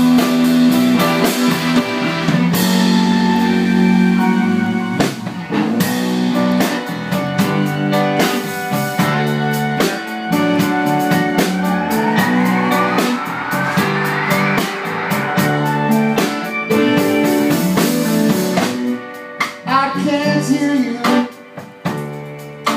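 Live song played on a grand piano with a band, in an instrumental passage between sung lines with a steady beat. About halfway through a rising sweep climbs for a few seconds, and the music thins out near the end.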